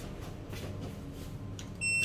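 Lift floor-button beep near the end, one short high tone as the ground-floor button is pressed, over a low steady hum in the lift car.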